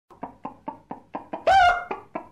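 A quick, even run of sharp knocks, about four or five a second, with a short, loud pitched call about one and a half seconds in.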